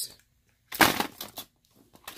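A hand rummaging in a clear plastic parts organizer box, rattling small phone parts and batteries against the plastic in one short burst of clatter lasting under a second.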